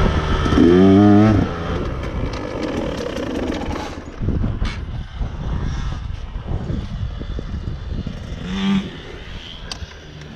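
KTM dirt bike engine revving hard about a second in, then running at lower revs with uneven knocks and clatter as it moves over the dirt single-track. It revs briefly once more near the end.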